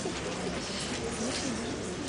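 A low murmur of a room with people in it, with a short wavering voice sound rising and falling in pitch about a second and a half in.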